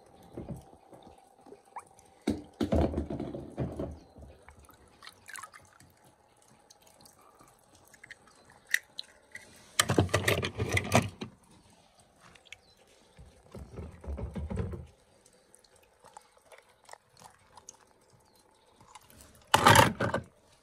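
Water splashing and dripping as a hand moves in a tub of water, in four separate bursts of a second or two, the loudest about halfway through, with a few small clicks between.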